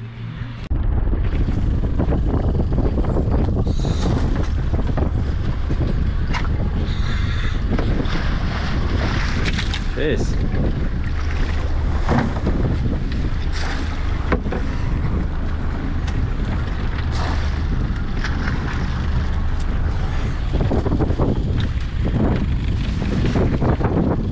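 Wind buffeting the microphone on an open boat at sea: a loud, steady low rumble that begins abruptly about a second in.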